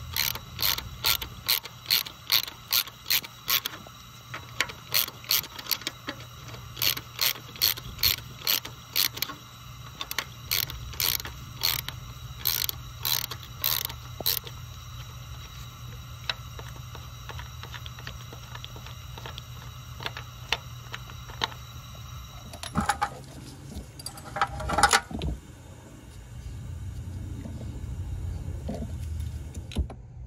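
Ratchet wrench clicking in short, even runs, about two clicks a second, as the threaded bolt of a 3D-printed valve spring compressor is turned on a valve spring. The clicking stops about halfway through; later a short, louder clatter of metal parts follows.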